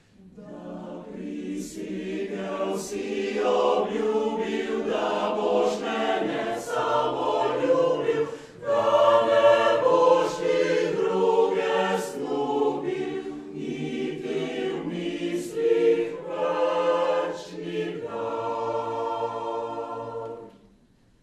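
Mixed choir of male and female voices singing a slow Slovenian art song in several parts, with a brief breath between phrases about eight and a half seconds in.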